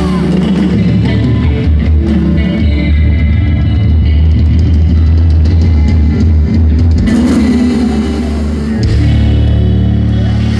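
A live band playing loudly on stage, recorded from the audience, with a heavy, booming bass.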